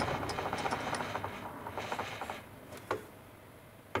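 Milling machine table being traversed along its leadscrew, a fast rattling whir that fades out about halfway through, followed by a single sharp click near the end.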